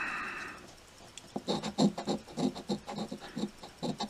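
A coin scraping the coating off a lottery scratch ticket. The short strokes start about a second in and repeat at about four a second.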